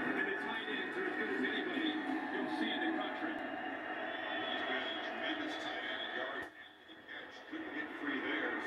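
A televised football game playing through a TV speaker: steady stadium crowd noise, which drops away briefly about six and a half seconds in.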